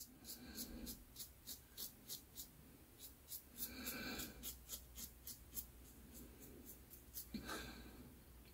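Vintage Gillette open-comb safety razor scraping stubble off a lathered cheek in short strokes, about three a second. A few soft breaths come in between.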